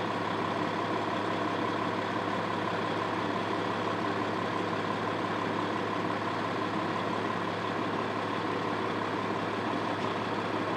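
Large diesel engine of a fire engine idling steadily, a constant low hum.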